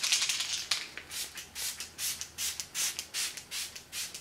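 Make Up For Ever setting spray (Light Velvet Air) pumped onto the face: a long hiss of mist, then a run of quick spray bursts, about two or three a second.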